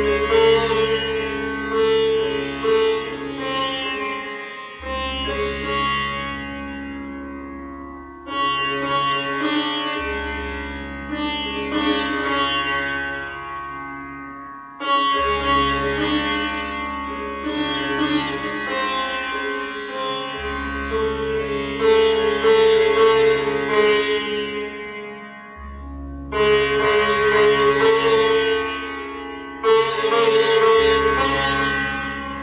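Sitar played solo: phrases of plucked notes over ringing strings, each phrase opening with a loud stroke and slowly fading, with a fresh strong stroke every five to eight seconds.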